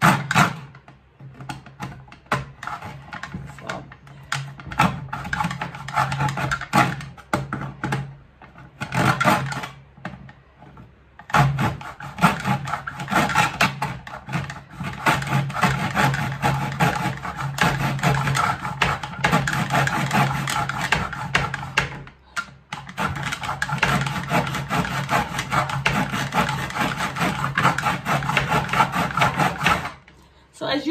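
Handsaw cutting a thin wooden strip in a plastic miter box, in quick back-and-forth strokes. The strokes are stop-start for the first third, then run steadily, with a short break about two-thirds of the way through.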